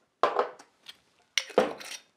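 Bottles and a metal cocktail shaker being set down and handled on a wooden bar: two clinks and knocks, a fraction of a second in and again near the end, each with a short ringing fade.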